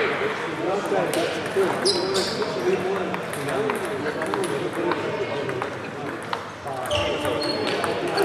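Table tennis ball clicking off bats and the table in a rally, a string of sharp clicks over a steady murmur of voices in a large hall.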